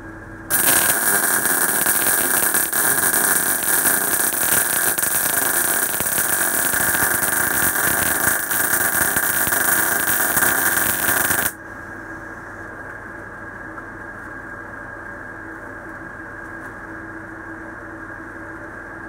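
Uptime MIG160 inverter wire welder's arc burning in one continuous weld of about eleven seconds, starting half a second in and cutting off suddenly. A quieter steady hum remains after the arc stops.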